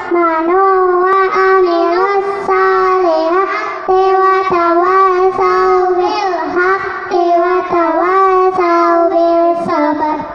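A group of children singing a melody together in unison into handheld microphones, in long held notes.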